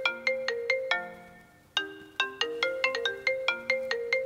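Mobile phone ringtone: a quick melody of short, chiming notes that breaks off about a second in and starts again after a short pause.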